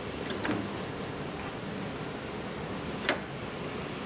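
Small metallic clicks from a hand working a thin metal cabinet door: a few light ticks about half a second in and one sharp click about three seconds in, over a steady hiss.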